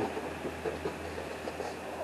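Quiet room background with a low steady hum, and faint soft sounds of a cardboard model-kit box being shifted by hand.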